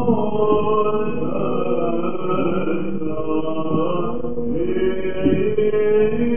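Male cantors chanting a slow, melismatic Byzantine hymn in the first mode (echos a'), the long notes bending slowly over a steady held drone note. The old recording sounds muffled, with nothing in the high range.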